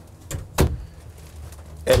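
A wooden wardrobe door in an RV bedroom being shut: a light tap, then a sharper knock just over half a second in as it closes.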